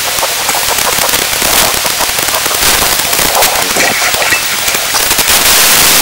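Radio static from a wireless camera's analogue link: loud hiss with rapid crackling as the signal from inside the den breaks up.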